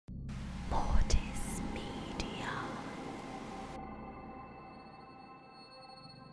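Glitch-style logo sting: a burst of static hiss with two heavy low hits about a second in, then a sustained ringing drone that slowly fades.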